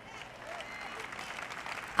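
Audience applause in a large hall, swelling over the first half second and then holding steady.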